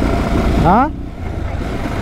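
Motorcycle engine running steadily at road speed, heard from the rider's seat with wind noise on the helmet-camera microphone.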